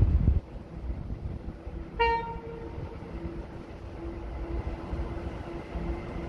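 A single short toot of a train horn about two seconds in, one steady pitch that fades within about half a second. Just before it, a low rumble stops abruptly near the start.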